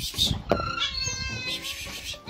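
A cat meowing: one long, steady meow starting about a second in, after some low thumps and a sharp click at the start.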